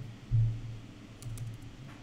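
Computer keyboard keys clicking a few times as text is typed, with a short low thump about a third of a second in, the loudest moment.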